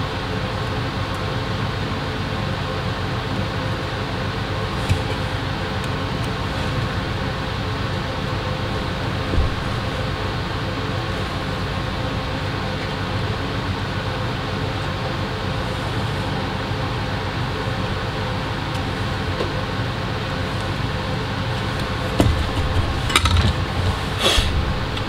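Steady hum and rush of an electric fan running at the workbench, with a few light clicks of soldering tools on the circuit board and a burst of louder handling clatter near the end.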